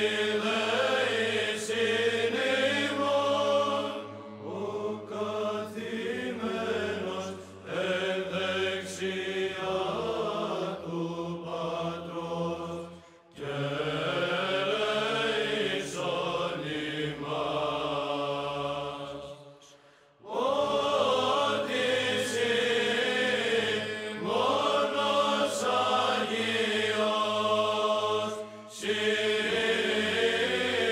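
Background music of slow vocal chanting over a steady low drone, in long sung phrases broken by brief pauses.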